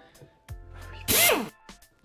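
A man's short, breathy vocal whoop falling in pitch about a second in, over background music.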